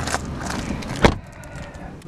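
A Ford Focus rear passenger door shut with a single solid thud about a second in.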